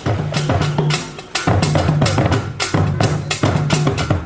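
Atumpan, the Asante talking drums, struck with sticks in a quick run of strokes, several a second, with a short break about a second in.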